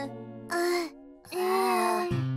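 A cartoon child's voice moaning sleepily twice, a short moan about half a second in and a longer one from about 1.3 seconds, over soft background music.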